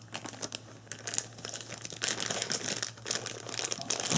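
Plastic packaging crinkling as it is handled, a continuous run of small crackles that grows busier after the first second or so.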